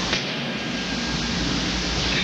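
Steady hiss of an old video recording's background noise, with a faint high steady tone and no distinct event.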